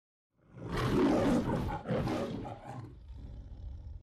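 A roar in the manner of the MGM lion logo, in two loud surges about a second long each, then tailing off.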